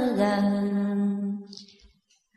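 A voice chanting Vietnamese devotional verse in the drawn-out ngâm style holds one long, steady note at the end of a line, fading away about a second and a half in, followed by a short silence.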